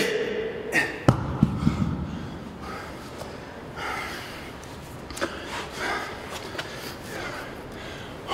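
A man lets out a strained grunt, then a dumbbell is dropped about a second in, landing with a sharp hit and a few heavy thuds. Hard, gasping breaths follow, about one a second, as he recovers from a set taken to failure.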